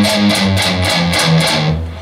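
Distorted electric guitar playing a palm-muted riff, stepping down note by note on the low E string from the fourth fret to open.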